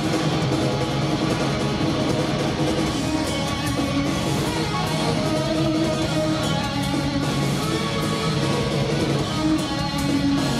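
Rock band playing live: electric guitars strummed over bass and drums, loud and continuous, with no break.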